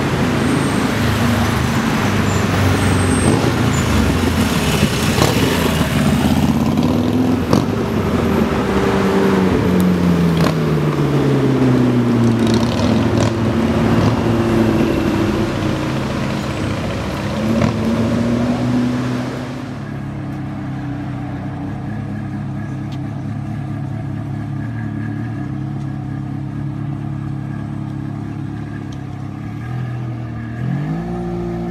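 Sports car engine accelerating hard along a street, its pitch sliding down and back up as it revs through the gears. After a sudden change it settles to a steady idle, the V8 of a Ferrari 360 Modena, and a quick blip of revs starts near the end.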